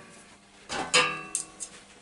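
A knock on metal about a second in, followed by a short ringing of several tones that dies away within a second, with a couple of light clicks after it.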